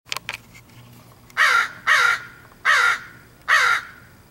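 A crow cawing four times, each caw short and falling slightly in pitch, spaced about half a second to a second apart. A couple of sharp clicks sound just at the start.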